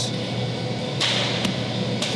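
Barbell being lifted off a bench-press rack: a short rush of noise about a second in, then a single sharp metallic click, over steady background music.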